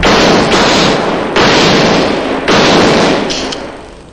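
Three pistol shots about a second apart, each loud and ringing on before the next, fading away near the end.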